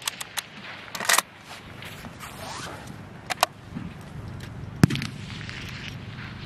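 Short metallic clicks and knocks of a K98k Mauser bolt-action rifle's bolt being handled, a cluster about a second in and a pair just past three seconds. About five seconds in comes one louder, sharp bang.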